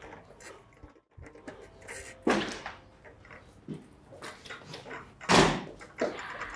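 A door being opened, heard as several short knocks and bumps in a quiet room, the loudest one about a second before the end.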